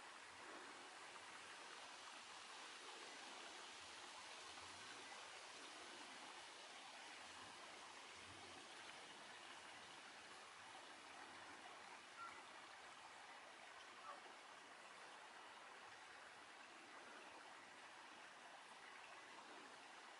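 Faint, steady rush of running water, a stream swollen by the storm's rain, with two small clicks a little past the middle.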